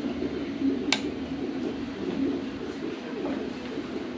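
Low, wavering background murmur with one sharp click about a second in.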